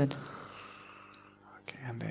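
Speech only: a man's voice trails off at the start, a short quieter gap of room tone with a faint hum follows, and soft speech starts again near the end.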